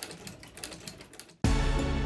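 Cobbler's leather-stitching sewing machine running, a quick string of light clicks as the needle stitches a piece of leather. About one and a half seconds in it is cut off by loud TV news jingle music that starts abruptly.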